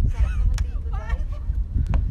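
Wind buffeting the microphone, with a few short calls over it that waver up and down in pitch and two sharp clicks, one about half a second in and one near the end.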